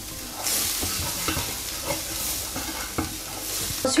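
Chopped onion and garlic frying in oil with just-added turmeric and cumin in a coated tajine base, a steady sizzle that swells about half a second in, while a wooden spatula stirs and scrapes across the pan with small knocks.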